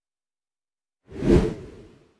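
A single whoosh sound effect used as an edit transition. It starts about a second in, swells quickly and fades away.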